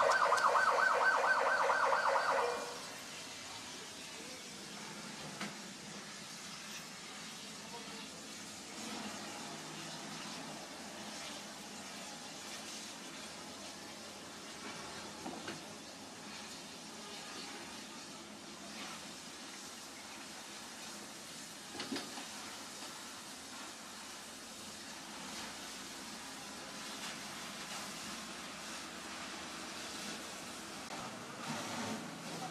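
An emergency vehicle's siren with a fast warble that stops abruptly about two and a half seconds in. Then only faint steady background noise with a few small clicks.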